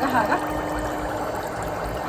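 Electric foot spa running: a steady motor hum under water bubbling in the basin.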